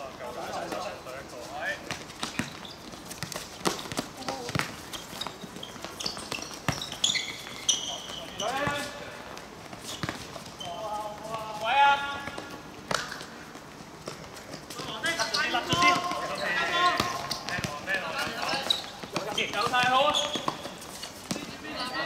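Amateur football players shouting and calling to each other across an outdoor court, with scattered thuds of the ball being kicked and feet on the surface. The calls come in bursts, the loudest about halfway through and again toward the end.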